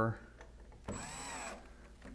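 Cordless drill-driver briefly running a screw through a desk column's steel foot plate into the desktop: one short run of about half a second near the middle, the motor's pitch rising then falling.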